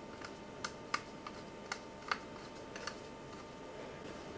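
A small screw being turned with a precision screwdriver into a drive's mounting hole through its cover plate: a scatter of light, irregular clicks and ticks.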